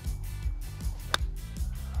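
Background music with a steady beat, and about a second in a single sharp click of a golf club striking the ball.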